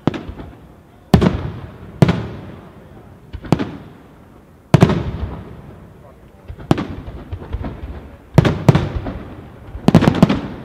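Aerial firework shells bursting in a steady succession: about nine sharp booms, one to two seconds apart, each followed by a long rolling echo, with a quick cluster of bursts near the end.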